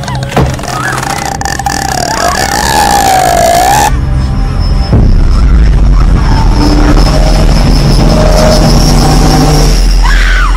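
Horror film score and sound design: an eerie wavering tone that slides up and down for about four seconds, then cuts to a deep, loud low rumble with sparse held notes and a thin high tone.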